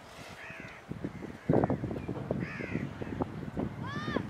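A bird calling three times, short arched calls, over a run of thuds and scrapes from hands working the dry earth and mud of the brick field. The loudest thud comes about one and a half seconds in.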